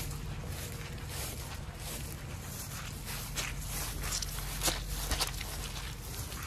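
Boot footsteps on a waterlogged, squishy lawn, a handful of soft steps that are most distinct in the second half, over a steady low rumble. The soaked ground is the sign of a French drain that is not carrying water away.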